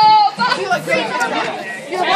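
Several people talking over one another, with one loud voice at the start and fainter mixed voices after it.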